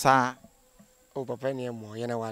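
Crickets trilling steadily at a high pitch behind a man's voice: a short bit of speech at the very start, then a drawn-out spoken sound from about a second in.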